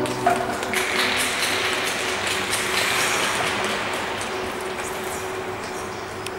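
Piano-led programme music cuts off, and about a second later applause and clapping rise in an ice arena, then fade over the next few seconds.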